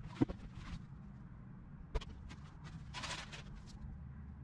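Faint sounds in a parked, empty car cabin: a low steady hum, a sharp knock just after the start, a single click about two seconds in and a short rustle near three seconds.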